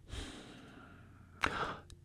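A man breathing at a close microphone: a soft breathy exhale just after the start, then a short sharp intake of breath about a second and a half in.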